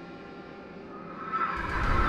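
Trailer score: a held ambient music drone, then a swelling rush of noise with a deep rumble that surges about a second and a half in.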